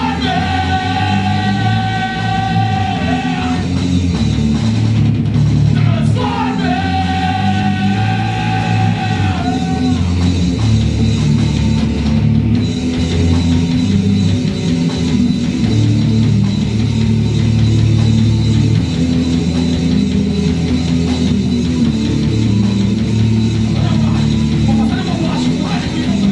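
Rock band playing live in a rehearsal room: drum kit, electric bass and electric guitar together. Two long high notes are held early on, each for about three and a half seconds.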